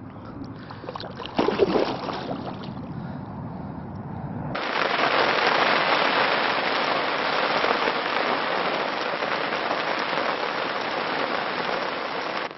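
Lake water sloshing and splashing around a carp held upright in the shallows, with a couple of louder splashes about a second and a half in. About four and a half seconds in, heavy rain starts pouring onto the lake surface: a dense, steady hiss.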